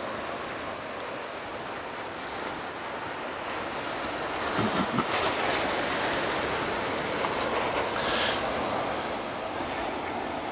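Surf breaking on an ocean beach: a steady rushing noise of waves that swells a little about halfway through, with a couple of brief low thumps around five seconds in.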